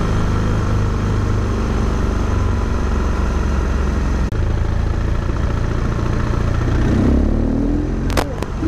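Steady wind and road noise on an action camera moving along the road, over a low engine drone that rises briefly near the end.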